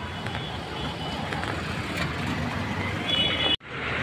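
Road and traffic noise heard from inside a car in city traffic: a steady low rumble with a few brief high beeps. It cuts off abruptly about three and a half seconds in, then outdoor street traffic noise takes over.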